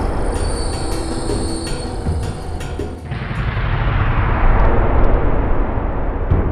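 A loud, dense rumbling sound effect with high ringing tones over the first three seconds. It dips briefly about three seconds in, then swells again.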